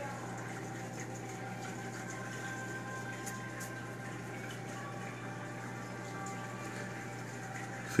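Reef aquarium equipment running: a steady low hum with an even wash of water noise from the tank's pumps and circulating water.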